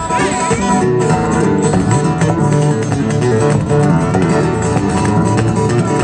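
Live blues band playing an instrumental passage of a song, with guitar prominent.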